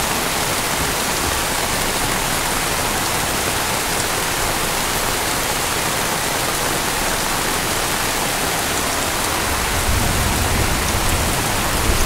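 Heavy rain falling steadily in a downpour, a dense even hiss of drops on the ground and vehicles.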